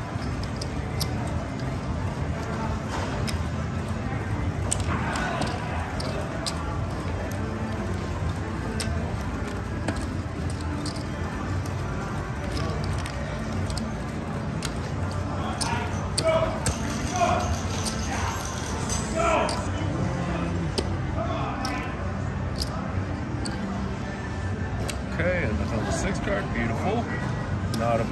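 Casino chips clicking and clacking in scattered short strikes as the dealer pays out bets and chips are stacked and gathered at a table game, over the steady hubbub of a casino floor with distant voices.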